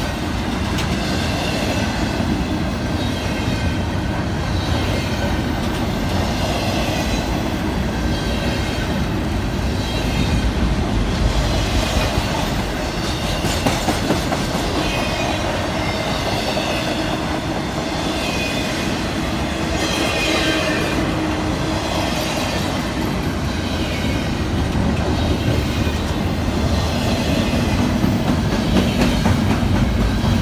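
A fast-moving double-stack intermodal freight train passing close by: steady rolling noise of steel wheels on the rails under loaded container well cars, with faint high-pitched squeals coming and going.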